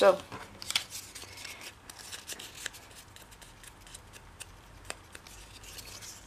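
Torn pieces of watercolour paper being handled and gathered, giving faint scattered rustles and small clicks.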